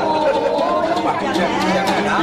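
Several people's voices talking at once, overlapping in a burst of chatter.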